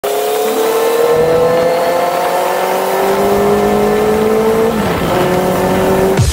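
Motor scooter engine running under steady throttle while riding, its pitch climbing slowly for about four and a half seconds, then dropping and holding lower. Wind rush runs under it.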